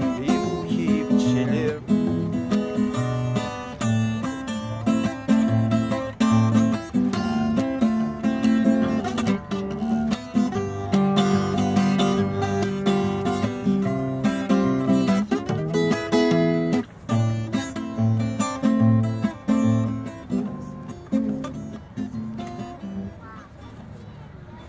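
Nylon-string classical guitar strummed in a steady rhythm of full chords. The chords die away over the last few seconds as the song ends.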